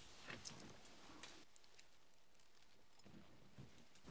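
Near silence, with a few faint short clicks in the first second or so.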